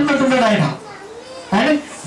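Speech only: a man talking into a handheld microphone, two short phrases with a pause of about a second between them.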